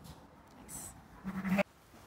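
A sheep's single short bleat about a second and a quarter in, cut off suddenly, over otherwise quiet barn room tone.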